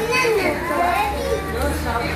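A group of young children talking over one another, a continuous overlapping chatter of many small voices.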